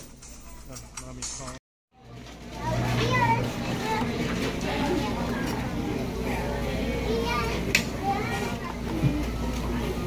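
Busy chatter of many voices, children's among them, over background music. A brief gap of silence about one and a half seconds in, after which the chatter and music come in louder.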